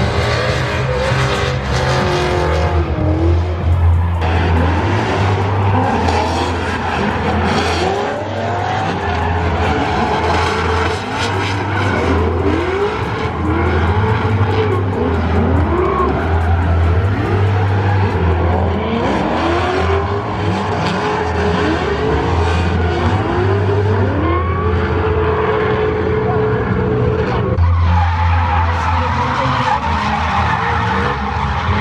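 Drift cars sliding around a track, their engines revving up and falling back again and again as the drivers work the throttle, with tyres screeching.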